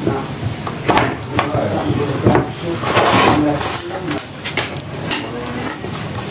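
Plastic clicks, knocks and clatter from a blue plastic fan blade being pushed onto a small desk fan's motor shaft and handled on a workbench, with a scraping rub about three seconds in.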